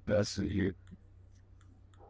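A woman's voice makes a brief utterance of a syllable or two at the start, followed by quiet room tone with a few faint clicks.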